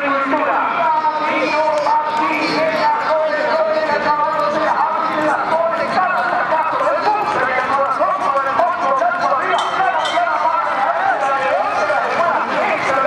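A man's voice talking without a break: rodeo announcer commentary, delivered fast and sing-song.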